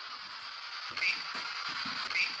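Steady hiss of a camcorder's recording noise in a quiet room, with two brief faint high chirps about a second apart.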